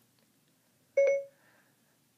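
iOS 7 Siri activation chime from an iPad speaker: one short electronic beep about a second in, the signal that Siri has opened and is listening.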